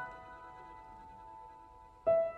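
Soft background piano music: a chord struck just before, left to ring and slowly fade, with no new note until the next chord.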